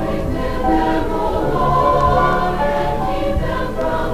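A high school chorus singing a slow choral piece in long held notes, played back from a 1975 vinyl record with a few faint clicks.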